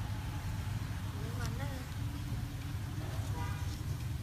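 A steady low rumble of outdoor background noise, like distant road traffic.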